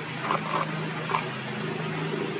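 A monkey gives three short squeaks over a steady low hum.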